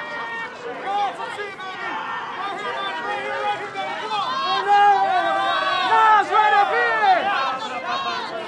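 A crowd of photographers calling out over one another at once, a babble of shouted voices that grows louder in the middle.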